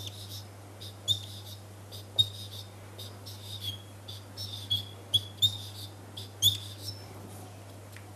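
Marker squeaking on a whiteboard as small boxes are drawn: a run of short, high squeaks and light taps, with a steady low hum beneath.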